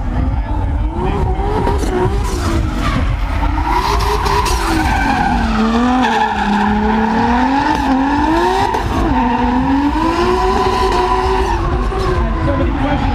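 Drift car engine revving up and down over and over as the car slides, with tire squeal and a steady low rumble underneath.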